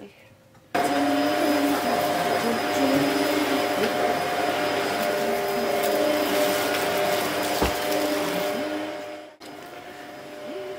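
Vacuum cleaner running with its hose nozzle worked over fabric floor cushions: a steady rush of air with a hum of a few steady tones. It starts suddenly about a second in and cuts off near the end.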